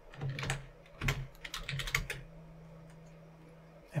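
Computer keyboard keys clicking in a quick, uneven run of presses for about two seconds, then only a faint steady hum.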